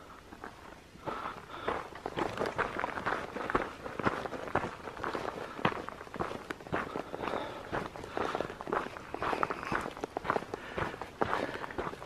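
A hiker's footsteps on a gravelly dirt trail at a steady walking pace, starting about a second in after a quiet moment.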